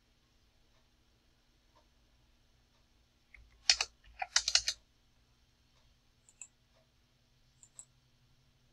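A short run of keystrokes on a computer keyboard a little under four seconds in, typing a number into a field, followed by two faint clicks near the end.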